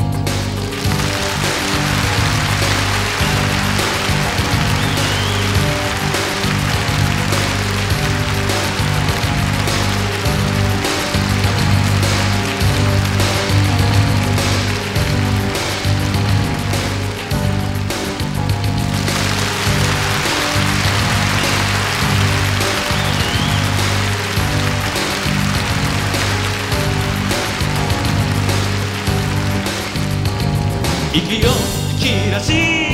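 Instrumental passage of a Shōwa-era Japanese kayōkyoku pop song, with a steady bass line and chords under a bright wash of cymbals; no singing. The bright top thins out briefly just past halfway, then returns.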